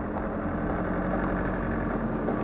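Shallow stream running over stones, a steady rushing wash with a faint low hum under it.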